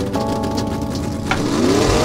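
Intro logo sting: held synth chords mixed with a car engine revving sound effect that rises in pitch in the second half.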